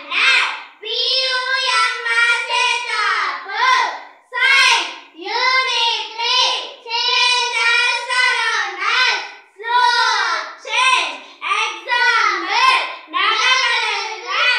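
Two young girls singing a song together, unaccompanied, with their voices close and loud.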